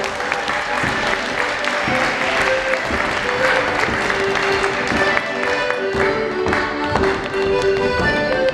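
Piano accordion playing a lively traditional dance tune for rapper sword dancers, with drumbeats and the dancers' shoes stepping and clicking on a wooden floor.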